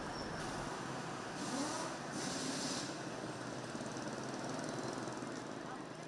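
Ambient city street traffic: motorbikes and cars passing, a steady background hum with a couple of brief swells as vehicles go by.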